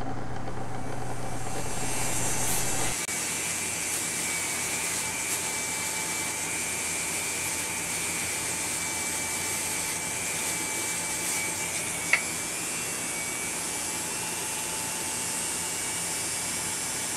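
Flex-shaft motor grinder (Foredom-type carving tool) running steadily, its speed set through a homemade rotary-dimmer speed controller, a steady whine over a hiss. A brief sharp click about twelve seconds in.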